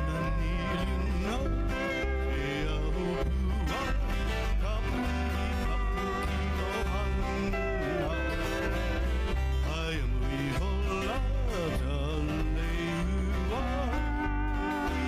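Live Hawaiian music: men singing over a double-neck acoustic guitar, a lap steel guitar with gliding notes, and a bass guitar keeping a steady pulse.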